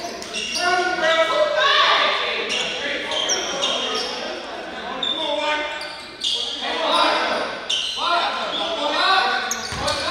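Voices of players and spectators calling out, echoing through a school gymnasium during a basketball game, with a basketball bouncing on the hardwood floor.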